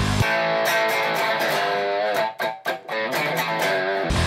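Enya Nova Go Sonic carbon-fiber electric guitar on its bridge humbucker in series, playing single notes with string bends and vibrato. It is heard through the guitar's own built-in 10-watt speaker from about three feet away, so it sounds thin, with no deep bass.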